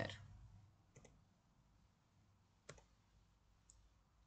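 Near silence broken by a few faint clicks from the presenter's computer, about a second in and again near the three-second mark, as the presentation is moved on to the next slide.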